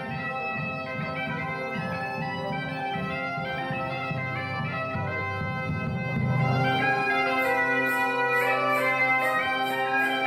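Bagpipe music: a melody over a steady drone. About seven seconds in, light rhythmic percussion joins and the music gets louder.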